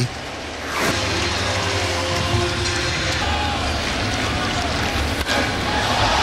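Steady crowd noise of a baseball stadium crowd, an even murmur cutting in abruptly about a second in, with a single sharp click near the end.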